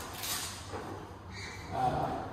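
Rustling and handling noises as objects are moved about on a table: a short hissing rustle at the start and a higher, thinner rustle in the last half-second or so.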